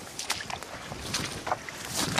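Dry grass and brush swishing and crackling irregularly, as someone pushes through it on foot.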